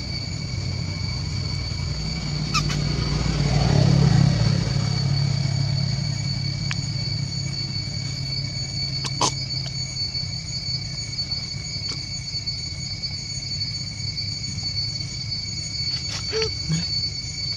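Low engine rumble of a passing vehicle, swelling about four seconds in and fading away, over a steady high-pitched insect drone. Two short clicks sound, one near the start and one about nine seconds in.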